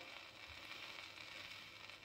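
Faint hiss and crackle of a shellac 78 rpm record's surface noise, the stylus still riding the groove after the song has ended.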